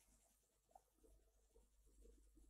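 Near silence: room tone, with a single faint tick about three-quarters of a second in.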